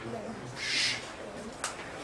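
A man's voice humming low between words, with a brief hiss about half a second in and a sharp click near the end.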